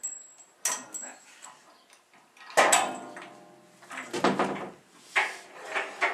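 Metal clunks and knocks from a screw oil press as its parts are worked by hand, a few sharp knocks first and then louder, longer clanks with some ringing in the second half.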